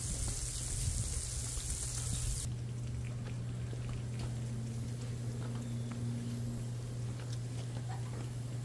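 Meat sizzling on a Blackstone flat-top griddle, a steady hiss that stops abruptly about two and a half seconds in, leaving a steady low hum.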